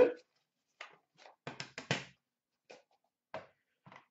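Hands handling trading-card boxes and hard plastic graded-card slabs: scattered short clicks and taps, with a quick run of several clicks about a second and a half in.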